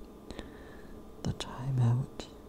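Close-miked whispering voice with wet mouth clicks, ending in a short low voiced hum.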